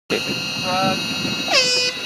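An air horn blasts near the end, bending down in pitch as it starts and then holding steady, with a shorter voice-like call a little under a second in.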